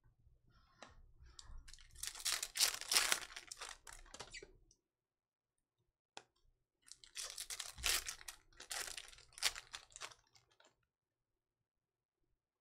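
Trading cards being handled by hand: chrome cards slid, gathered and squared into a stack, heard as two spells of papery rustling and light clicks with a pause between.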